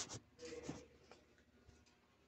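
Two brief rustling scrapes in the first second, over a faint steady low hum; the rest is near silence.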